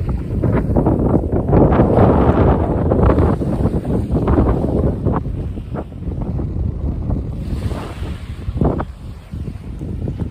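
Gusty wind buffeting the phone's microphone at the beach, with surf underneath; the buffeting eases off over the second half.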